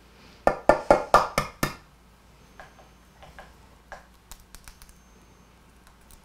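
Egg tapped six times in quick succession against the rim of a stainless steel mixing bowl to crack it, each tap with a short ring, followed by a few faint clicks.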